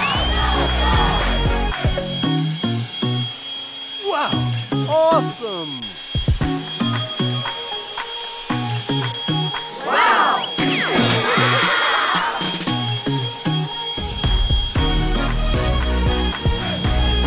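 Background music over the steady high whine of a cordless leaf blower running, with a child's squeals about four seconds in and again about ten seconds in.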